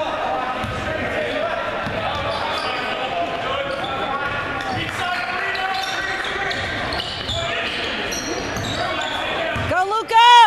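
A basketball bouncing on a hardwood gym court during play, under steady overlapping chatter and calls from spectators, echoing in a large gymnasium.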